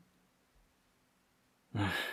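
Near silence, then about three-quarters of the way in a man sighs: a short breathy exhale with a brief voiced start.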